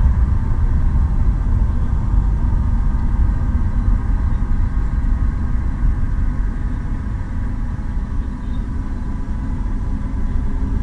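Low, steady rumble of a Falcon 9 rocket's nine Merlin 1C first-stage engines during ascent, easing slightly in level in the second half.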